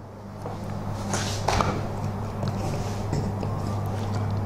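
The door of a large cabinet egg incubator being swung shut and latched, with a couple of short knocks about a second and a half in, over a steady low electrical hum.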